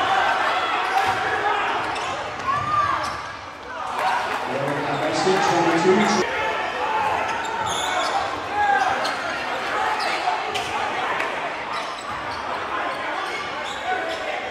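Basketball game sounds in an echoing gym: the ball bouncing on the hardwood court, short sneaker squeaks, and players and spectators shouting and talking.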